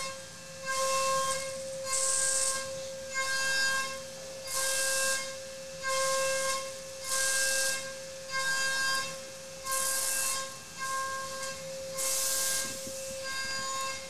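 DATRON M8Cube CNC milling spindle turning a single-flute stepped end mill at 32,000 RPM, a steady high whine, while roughing a pocket with a 2 mm full-width cut. About once a second the cutter bites into the metal for under a second of loud hissing, whining cut, about a dozen passes in all.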